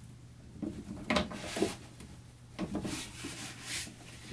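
Hands fitting plastic tubing onto a small Seaflo 12-volt water pump: a few short rubbing and knocking handling sounds, in small clusters about a second in, near three seconds and just before the end.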